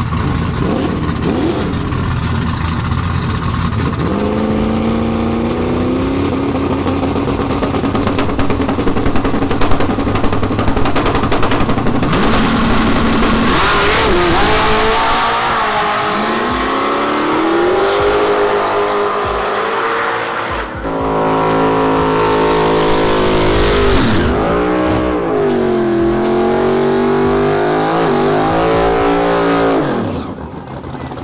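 Drag-race car engines at full power: a car holds a steady high rev at the starting line, then launches and runs hard, the engine pitch climbing and dropping through the gears. After a brief break, another engine revs up and down.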